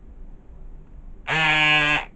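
A loud, steady buzzing tone of one fixed pitch starts about a second in and cuts off abruptly after well under a second.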